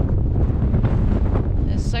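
Wind buffeting the camera's microphone, a steady, loud low rumble.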